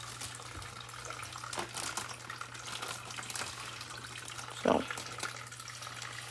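An aquarium filter runs in the tub with a steady trickle of water and a low, even hum. Over it come a few light crinkles and snips as scissors cut open a plastic fish bag.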